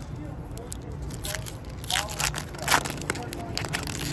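A 2022 Topps Finest Flashbacks foil trading-card pack being torn open and crinkled in the hands. It makes a run of sharp crackles and rips, busiest in the middle and loudest a little under three seconds in.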